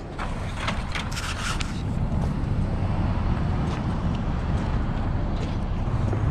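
A motor vehicle running close by: a low, steady rumble that grows a little louder after the first two seconds, with a few light clicks in the first two seconds.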